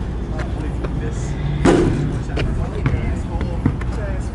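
A basketball shot at an outdoor hoop: a few sharp thuds of the ball, the loudest and ringing a little before the middle as it strikes the hoop, then bounces on asphalt, over a steady low rumble.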